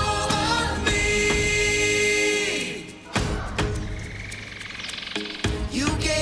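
Children singing a song together with musical accompaniment and drums. A long held note ends about two and a half seconds in, the music drops quieter for a couple of seconds, and the singing picks up again near the end.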